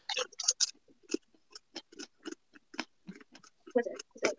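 Crunchy chewing of a Paqui One Chip tortilla chip: a string of short, irregular crackles, several a second.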